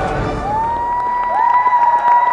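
Theatre audience cheering and applauding, with two long, high whoops that each rise and then hold steady, the second starting as the first is still going.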